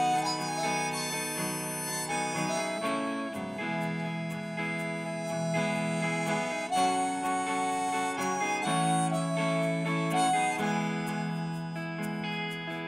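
Harmonica solo playing held, wavering notes, backed by a band with electric guitar and drums during an instrumental break in a folk-rock song.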